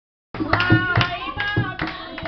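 A Bhojpuri song: a singing voice over a sharp, clap-like percussive beat, starting abruptly about a third of a second in.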